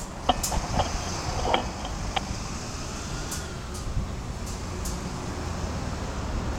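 A few sharp light clicks and knocks in the first two seconds, from gear being handled, then a steady low background rumble with a few faint high ticks.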